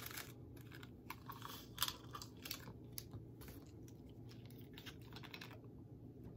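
Faint, irregular clicks and crinkles of medicine blister packs being handled, capsules and tablets popped out through the foil, stopping about five and a half seconds in.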